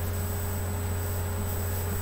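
A steady low hum with a faint even hiss behind it, unchanging throughout, with no knocks or other distinct sounds.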